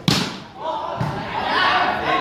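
A volleyball struck hard by hand on the serve: one sharp smack, followed about a second later by a softer hit on the ball as play goes on. Spectators' voices rise behind it.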